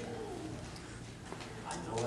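Faint, low voice sounds in a hushed room: a drawn-out gliding vocal sound near the start and quiet murmuring near the end.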